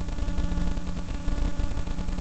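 Steady background machine hum: a low rumble with a few held tones and hiss over it, unchanging throughout.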